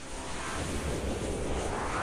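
Intro-animation sound effect: a rushing, rumbling whoosh that rises in pitch toward the end.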